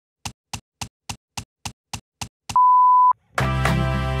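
Produced intro sound: nine quick, evenly spaced ticks, about three and a half a second, then a loud steady beep held for about half a second. Music with a steady bass line starts just after.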